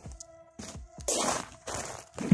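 Background music with held notes, under footsteps coming close and then a loud rustling burst about a second in, as hands grab the camera and cover the lens.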